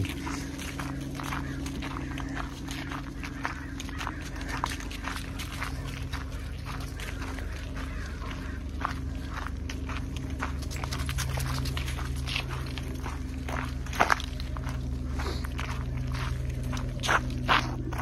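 Footsteps crunching on a gravel path strewn with dry leaves, with dogs moving about close by, over a steady low hum. A sharper knock comes about fourteen seconds in.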